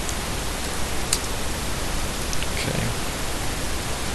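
Steady hiss of recording noise with a low hum underneath, and a few faint clicks of computer keys being typed.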